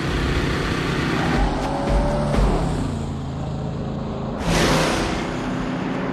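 A big sedan's engine bearing down along the road, then a sudden loud rush of noise as it passes close by about four and a half seconds in, the car narrowly missing a boy at the roadside.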